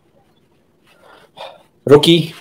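A quiet pause with two faint short sounds just past the middle, then a person starts speaking near the end.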